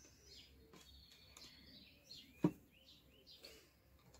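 Faint birds chirping in the background, with one short sharp sound about two and a half seconds in.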